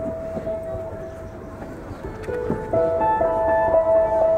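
Solo balalaika playing: a single held note, then from about two seconds in a run of plucked notes that grows louder.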